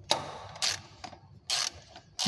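Ratchet wrench with a spark plug socket clicking in three short bursts as the spark plugs are loosened; the plugs already turn easily.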